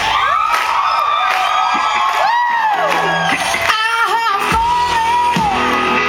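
Live band music with long, high, wailing held notes that glide up and down over a steady low accompaniment, with the festival crowd whooping and yelling along.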